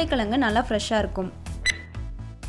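A woman speaking over steady background music, then a short, bright ding sound effect about three-quarters of the way in, marking the change to the next tip.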